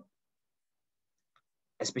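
Near silence with the call audio gated to nothing, broken by a faint tick or two, before a man's voice resumes near the end.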